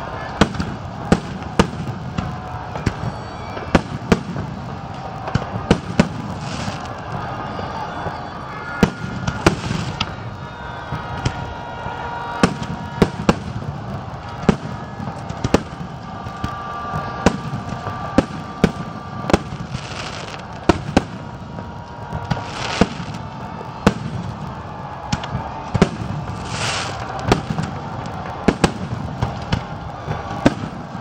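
Aerial fireworks shells bursting: a long run of sharp bangs at irregular intervals, about one to two a second, over a steady background din.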